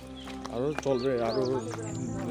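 A man talking over background music with steady held tones.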